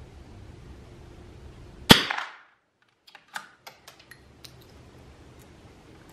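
A single shot from a .22 LR bolt-action rifle about two seconds in, echoing briefly in the small wooden shed. It is followed by a series of small sharp clicks as the bolt is worked to reload.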